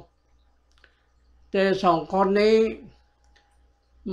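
A single voice speaking one short phrase about a second and a half in, after a pause. A few faint clicks fall in the pause.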